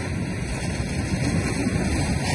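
Wind buffeting the microphone over the rush of surf on a beach: a steady rushing noise with a deep rumble underneath.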